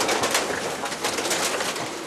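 Wheel loader's bucket pushing into a masonry wall and stall: a dense run of crackling and crunching from breaking debris, over the machine's noise.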